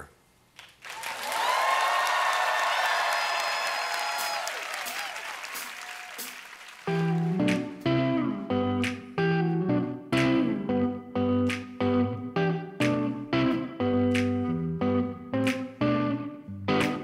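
Studio audience applauding and cheering for several seconds. About seven seconds in, a live band starts an instrumental intro: electric guitars with low bass notes, struck in a steady rhythm.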